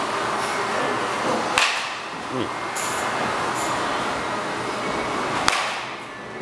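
A baseball bat striking a ball twice, sharp cracks about a second and a half in and again near the end, over steady background noise.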